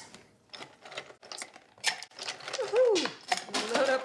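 Ice cubes clattering and clinking as they are dropped by hand into a stainless-steel cocktail shaker tin, an irregular run of sharp clicks and knocks.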